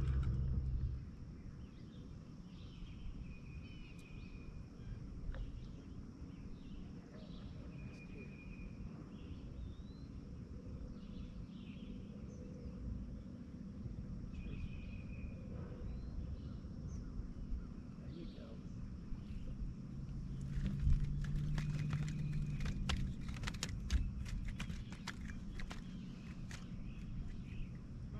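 Open-air ambience on a lake: a low steady rumble of wind and water, with a bird giving a short call every few seconds. From about twenty seconds in comes a run of sharp clicks and knocks from handling gear in the boat.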